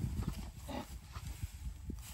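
Faint, irregular soft knocks of cattle hooves shuffling on dry dirt as calves move around the feed sack, over a low rumble.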